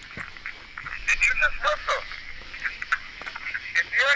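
An earlier recording played back through a handheld recorder's small speaker: thin, tinny fragments of voices, broken and choppy at first.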